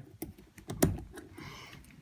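A few light metallic clicks and clinks as a couch tension spring, its coils packed open with coins, is handled and hooked onto its clip. The loudest click comes a little under a second in.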